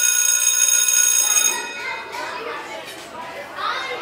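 A school bell rings with a steady, bright tone and stops about a second and a half in. Children's chatter and shouts follow, like a busy playground.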